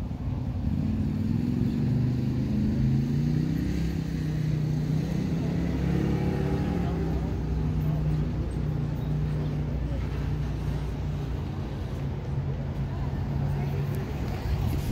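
A motor vehicle's engine running close by, a low steady hum whose pitch shifts in the first half and then holds steady.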